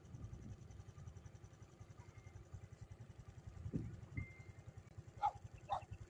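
A dog barking twice near the end, two short barks about half a second apart, over a faint low rumble.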